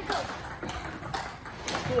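Table tennis balls striking bats and tables: about four sharp clicks, one every half second or so.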